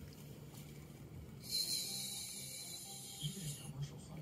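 Domestic cat hissing: one long warning hiss of about two seconds, starting about a second and a half in.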